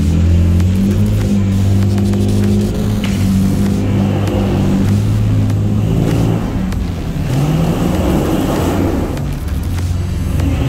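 LS V8 engine of a lifted Jeep CJ-7 running at low throttle as it crawls over muddy ground, revving up in the second half.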